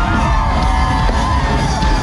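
Loud live stadium concert music with a heavy bass beat, and a large crowd yelling and cheering over it. A long held voice rings through most of it.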